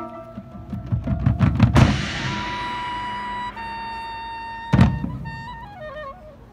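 Marching band and front-ensemble percussion playing: a build of low drum hits swells to a loud accent about two seconds in, then a held chord rings and shifts to a new chord halfway through. Another loud hit comes near the five-second mark, followed by a falling run of notes.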